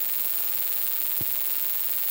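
Steady hiss with a faint electrical hum from the microphone and sound-system chain, with one faint tick a little past the middle.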